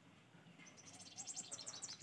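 Near silence, with a quick run of faint, high-pitched chirps from a small animal in the background during the second half.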